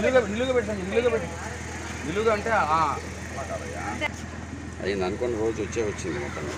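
People talking in short exchanges, over a steady low hum.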